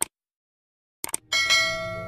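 Subscribe-button animation sound effect: a mouse click, then about a second later two quick clicks followed by a bright bell chime that rings on, slowly fading.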